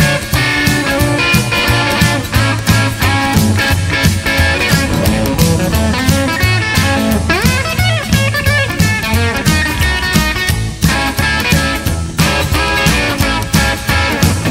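Instrumental break of a rockabilly song: lead guitar over a stepping bass line and drums, with a sliding rise in pitch about seven seconds in.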